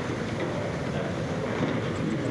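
Steady rumbling noise from a covert camera's microphone, with handling noise and muffled room sound.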